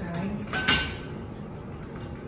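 A single sharp clack with a brief hiss about half a second in, from oxygen equipment being handled at the patient's portable oxygen cylinder, with a quiet spoken word.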